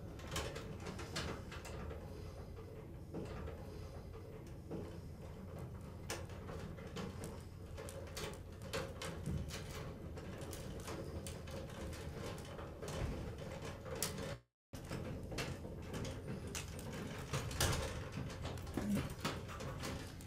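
Faint clicks and rustling of electrical wires and twist-on wire connectors being handled and twisted together inside a sheet-metal light fixture, over a steady low hum. The sound cuts out completely for a moment about two-thirds of the way through.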